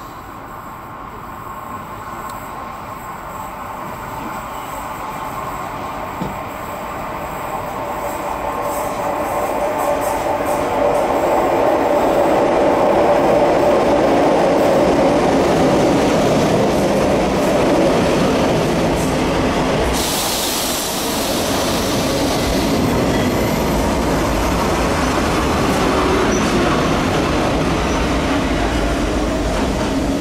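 Renfe series 446 electric multiple unit, two units coupled, approaching and running into the station, growing steadily louder over the first dozen seconds and then holding. The wheels squeal on the very tight curve the station sits on, and a hiss cuts in about twenty seconds in for a couple of seconds.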